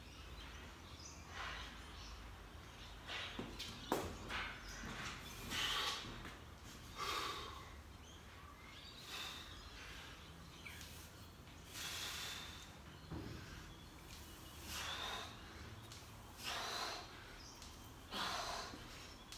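A man breathing hard through a 20-rep set of barbell back squats, with sharp puffs of breath about every one to two seconds, the heavy breathing of exertion under the bar. A couple of short clicks come early on.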